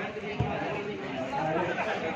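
Spectators' overlapping voices chattering, with a single short low thump about half a second in.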